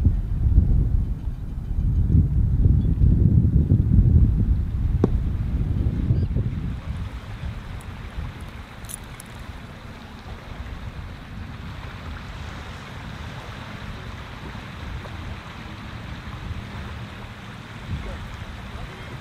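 Wind buffeting the microphone, gusting heavily for the first six or seven seconds, then easing to a softer, steady rush.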